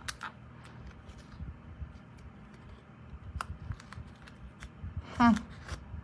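Die-cut cardstock and foil paper strips being handled and pulled apart: faint paper rustling with a few light clicks and taps.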